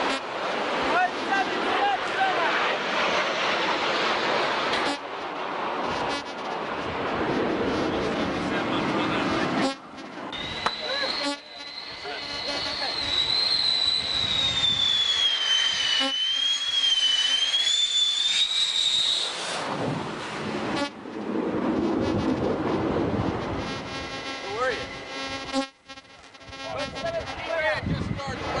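Navy jet aircraft flying past low over the sea: a loud, steady jet noise with wind on the microphone, broken by several sudden cuts. For several seconds in the middle a high engine whine rides on top, wavering and sagging in pitch as the jet passes.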